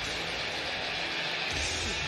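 Steady, even crowd noise of an ice hockey arena, with no distinct impacts.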